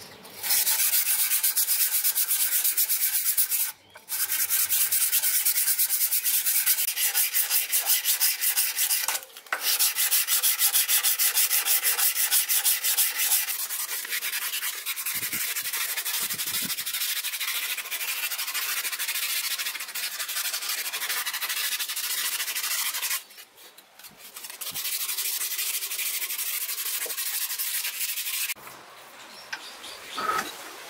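Hand sanding of steel block-plane parts clamped in a bench vise: sandpaper rubbed rapidly back and forth over the metal in long runs, with short pauses about 4 and 9 seconds in and a longer one about two-thirds of the way through.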